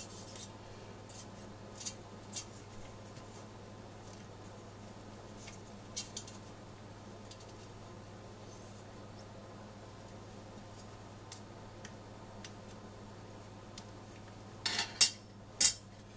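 Metal screwdriver prodding melted nylon blobs in a stainless-steel saucepan of hot oil, with scattered faint clicks and scrapes against the pan and a few sharper metal clinks near the end. A low steady hum runs underneath.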